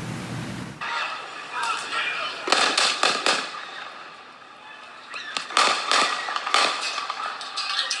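Gunshots on a handheld night-time video recording: a first group of sharp cracks about two and a half seconds in, then a second quick volley about three seconds later, eight shots in a row in all, with people's voices around them.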